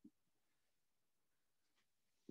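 Near silence, with one faint short sound right at the start.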